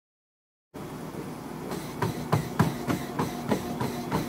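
Motorised treadmill running, its motor and belt humming with a faint steady whine, cutting in abruptly just under a second in. From about two seconds in, sprinting footfalls strike the treadmill deck about three times a second.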